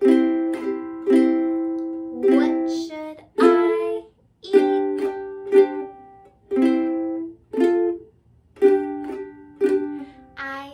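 Ukulele strummed in chords, a strum about once a second, each chord ringing and fading, with brief gaps between some strums.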